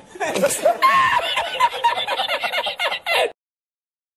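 People laughing and snickering in short vocal bursts, cut off abruptly just after three seconds in.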